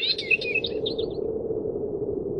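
Birds chirping in a quick run of short high tweets that fades out about a second in, over a steady low hum that carries on.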